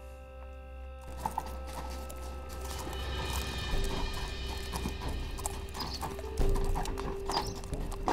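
Horses' hooves clip-clopping as riders set off at a walk, starting about a second in, over a background music score.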